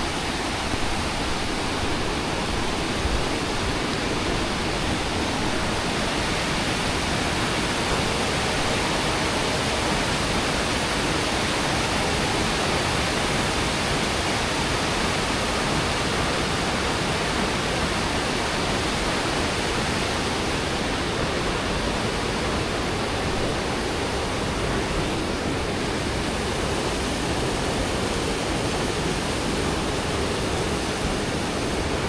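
Mountain stream rushing over boulders and small cascades: a steady, even roar of water with no break.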